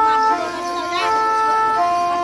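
A wind instrument playing a melody of held notes that step to a new pitch every half second or so, with short wavering slides between some notes.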